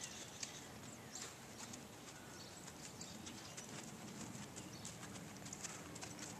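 A ridden horse walking on sand footing, its hooves making faint, irregular footfalls.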